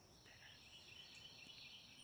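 Near silence with a faint, steady high-pitched insect chorus in the background.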